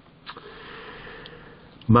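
A man's audible breath in, drawn out for about a second and a half, a soft hiss with no voice in it; speech starts again just at the end.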